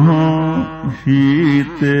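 A male voice singing a Gurbani shabad in Sikh kirtan style: long, ornamented notes that slide and bend in pitch, with short breaks between phrases.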